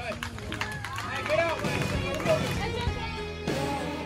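Spectators' and players' voices calling out around a baseball field, followed by background music that comes in near the end.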